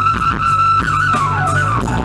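Live band playing an instrumental passage: a held high lead note that slides steadily down in pitch near the end, over a bass line and regular drum beats.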